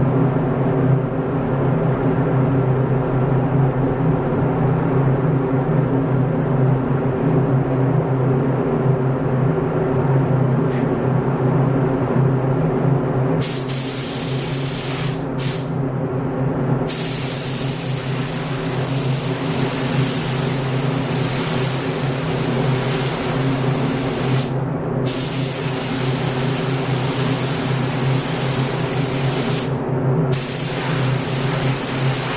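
Steady low hum of the paint booth's air system throughout; from about halfway in, a paint spray gun fires a continuous hiss of compressed air in long passes, cut off briefly twice as the trigger is released.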